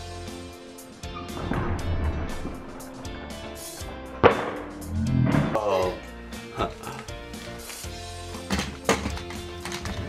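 Background music with steady held notes runs throughout. Over it, a plastic toy monster truck rumbles along a wooden ramp and lands with a sharp clack about four seconds in, the loudest sound; lighter knocks follow as it is handled.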